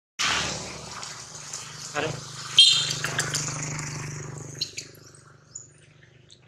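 A macaque's brief, high squeal about two and a half seconds in, over rustling and scuffing close to the microphone and a low steady hum.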